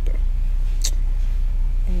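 A steady low hum runs throughout, with one brief high click or rustle a little under a second in.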